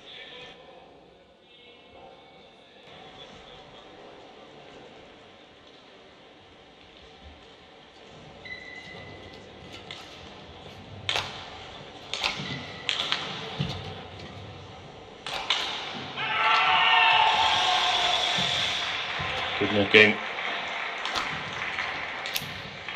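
Badminton rally in an indoor arena: sharp racket strikes on the shuttlecock, several over the second half, with loud squeaking of shoes on the court mat in the latter part. The first several seconds are only the quiet murmur of the hall.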